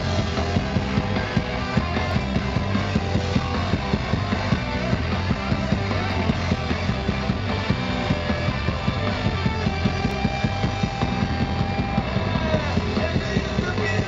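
Rock band playing live with electric guitars, bass and drums in an instrumental passage without vocals, over a steady drumbeat.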